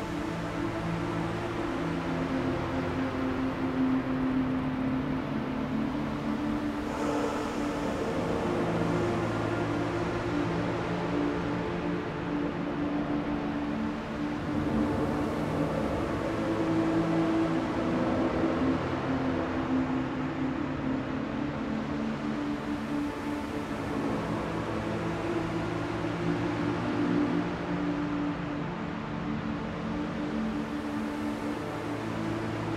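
Dark ambient music: sustained low synth drones that shift in pitch every several seconds, layered over a steady hiss of industrial machine ambience.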